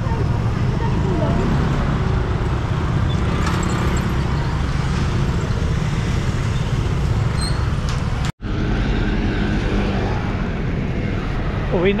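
Busy street traffic of motor scooters running and passing close by, mixed with the chatter of shoppers, a steady dense noise with a deep rumble. It drops out for an instant about eight seconds in.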